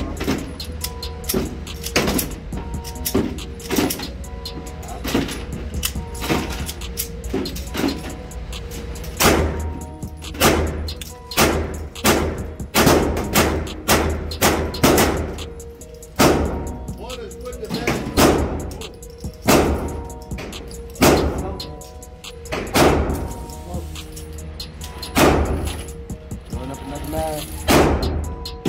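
A string of .22 LR shots from a Ruger LCP II pocket pistol at an indoor range, sharp cracks about one to two seconds apart, with music playing over them.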